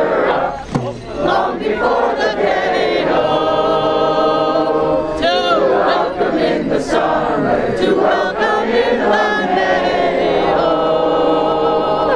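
A large crowd of voices singing together outdoors, with long held notes and calls from people in the crowd.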